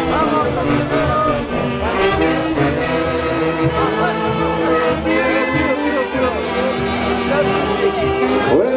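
A live Huancayo folk orchestra playing tunantada dance music, with horns carrying the melody over a steady dance beat.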